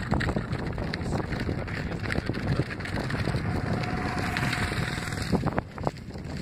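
Wind buffeting the microphone, with the plastic wheels of a child's ride-on toy crunching and rattling over sandy dirt and gravel.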